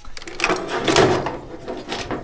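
A rustle and scrape of handling inside a furnace cabinet as wires and multimeter leads are moved about the transformer terminals. It rises about half a second in, is loudest around the middle and fades out.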